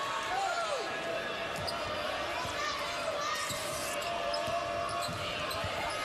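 Basketball being dribbled on a hardwood court during live game play, over the steady murmur of the arena crowd.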